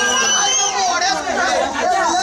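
A crowd of men talking and calling out over one another, with a thin high tone that slides upward twice.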